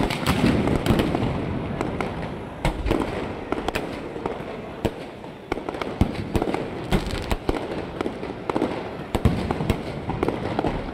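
Fireworks going off overhead: irregular sharp bangs and crackles, several a second at times, over a constant background din.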